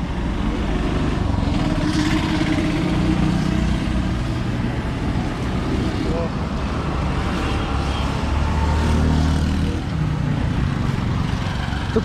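Roadside traffic noise: the engines of passing road vehicles running, a steady mix with a stronger low engine drone for a couple of seconds around eight seconds in.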